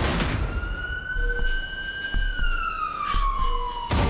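A siren wailing: one slow rise in pitch, then a longer fall, cut off abruptly just before the end, over a low rumble.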